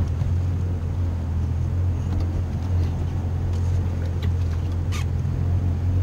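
A boat's engine running steadily at idle, a low even hum. There is a single short click about five seconds in.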